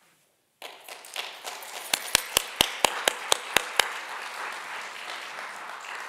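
Audience applause rising after a moment of near silence, with a run of about nine sharp, louder claps in the middle.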